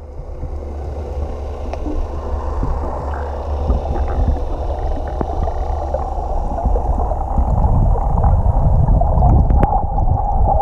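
Muffled underwater sound through a waterproof camera housing: a steady low rumble and wash of water with a few faint clicks, growing gradually louder.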